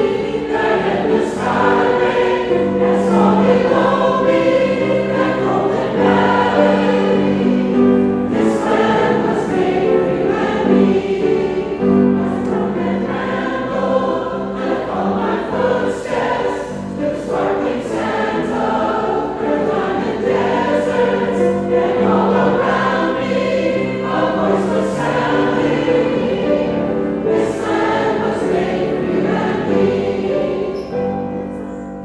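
Mixed choir of women's and men's voices singing together in harmony, with long held chords.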